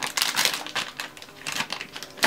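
Soft plastic wet-wipe packet crinkling as a wipe is pulled out, a quick irregular run of small crackles that is busiest in the first half.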